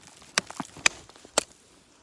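A wooden stick jabbing and prying at loose shale rock: four sharp cracks within about a second and a half.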